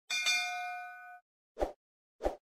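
Notification-bell sound effect: a bright bell ding, struck twice in quick succession and ringing for about a second. A short soft pop follows near the end.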